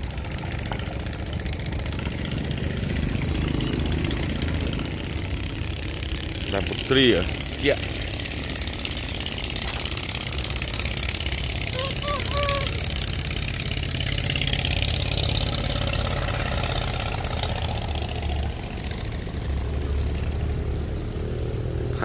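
An engine running steadily at an even pace, with a brief voice about seven seconds in.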